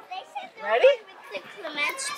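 Children's voices and chatter in a busy playground, with an adult asking "Ready?" a little under a second in.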